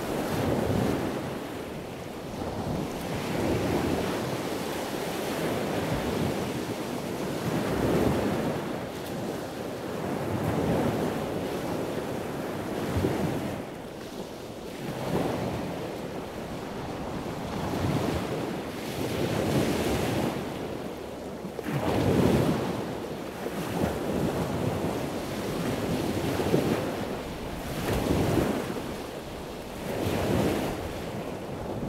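Wind and water noise that swells and fades every two to three seconds, like waves washing in, with wind buffeting the microphone.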